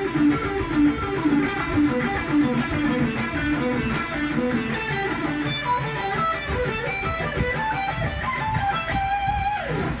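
Charvel electric guitar playing fast alternate-picked pentatonic runs, two notes per string in repeating down-up patterns. The run starts low and climbs higher across the fretboard, ending on a held note that slides down in pitch.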